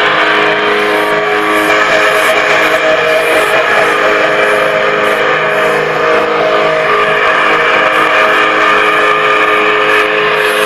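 Noise-rock band playing live: loud, steady wall of distorted electric guitar and bass holding droning notes.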